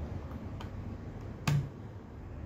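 A few faint ticks, then one sharp plastic click about one and a half seconds in, as a button on a small solar charge controller is pressed in an attempt to switch off its load output.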